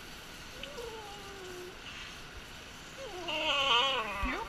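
Small dog whining while being bathed: a falling whine about half a second in, then a louder, wavering whine near the end.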